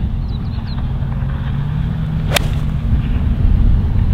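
A golf iron striking the ball in a full swing: one sharp, short click a little over two seconds in.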